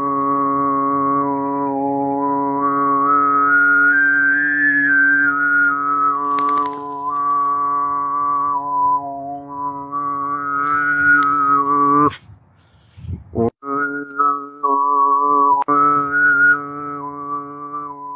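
A man overtone singing (throat singing): one low note held steadily while a whistling overtone above it shifts up and down to make a melody. It breaks off briefly about twelve seconds in, then resumes on the same low note.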